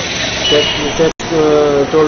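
Street traffic noise from a passing motor vehicle, a steady rushing, with a man's speech coming in clearly after a momentary dropout about halfway.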